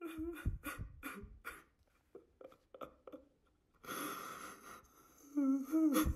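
Rhythmic vocal percussion: sharp clicks with low thumps, about four a second, for the first second and a half, then sparser sounds and a breathy hiss about four seconds in. A person starts humming near the end.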